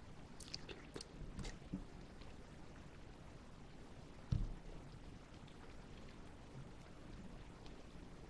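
Faint mouth sounds of chewing a chunk of Pinkglow pineapple, with small wet clicks and smacks in the first couple of seconds. A single dull thump comes a little past four seconds in.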